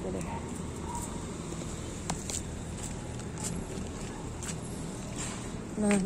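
A few light clicks over a steady outdoor background as ripe tomatoes are cut from a dried-out plant with garden scissors and handled.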